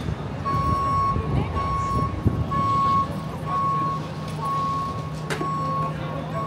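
Vehicle reverse alarm sounding a single high beep about once a second over a steady low engine rumble, with one sharp knock near the end.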